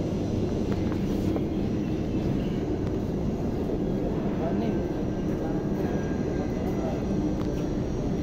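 Steady low rumbling noise with an indistinct murmur of voices under it.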